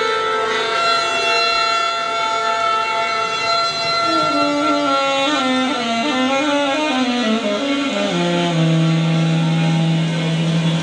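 Saxophone layered with live electronics: several held tones sound at once, and one line steps and slides downward through the middle, settling on a low steady tone about eight seconds in.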